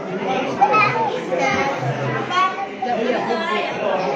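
Background chatter of many overlapping voices, children's among them, talking and calling in a large echoing hall.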